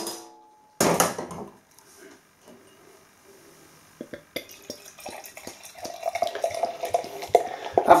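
A ringing glass clink at the start and a short hiss about a second in as the beer bottle is opened. From about four seconds in, the barley wine pours from the bottle into a stemmed glass, a steady splashing gurgle that grows louder as the glass fills.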